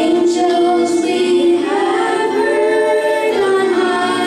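A small group of young singers singing together in long held notes.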